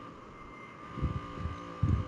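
Low background noise under a steady, thin electrical hum, with a faint voice murmuring briefly about a second in and again near the end.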